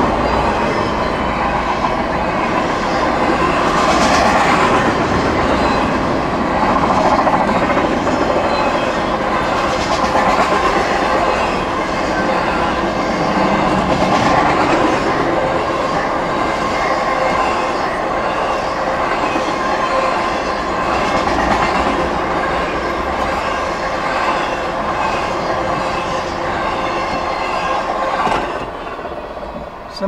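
Double-stack intermodal freight train rolling past at close range, a loud steady noise of steel wheels on rail under the container cars. It eases off near the end as the last cars go by.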